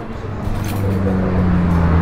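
A road vehicle's engine running, a low steady drone that comes in about half a second in and grows louder.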